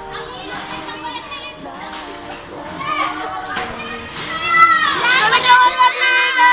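Young people's voices in a classroom: several talking and calling out over each other, then from about four seconds in one voice turns loud and high and holds long notes.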